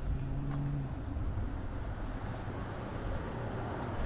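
Street traffic: a car's low engine hum fades out about a second in, leaving a steady low road rumble.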